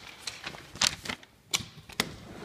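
A sliding glass patio door being handled and pushed open: a handful of sharp clacks and rattles, the loudest a little before halfway.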